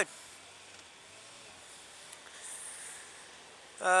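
Faint, steady hiss of wind and road noise on a motorcycle helmet-camera microphone while riding, growing a little louder and brighter for about a second past the midpoint.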